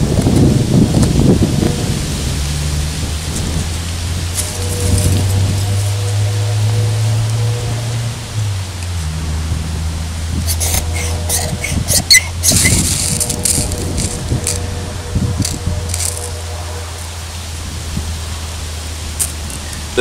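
Background music of held low notes. Between about ten and thirteen seconds in, a few quick hissy scrapes: the spine of a SOG PowerPlay multi-tool's saw blade struck down a ferrocerium rod to throw sparks.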